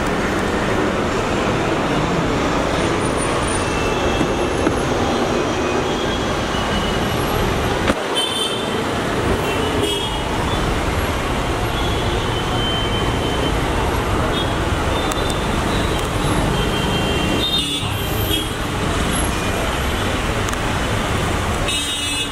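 Steady street traffic noise, with a few short high tones and faint voices over it.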